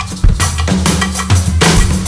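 Live drum kits playing an Afrobeat groove: steady kick drum, snare and rimshot hits, with low bass notes sustained underneath.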